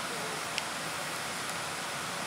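Steady background hiss of room tone with no distinct event, a faint distant voice briefly near the start and a small click about half a second in.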